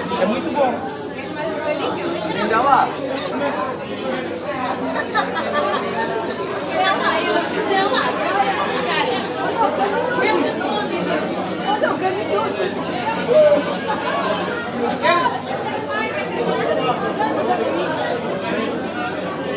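Crowd chatter: many people talking at once in a hall, with no music playing.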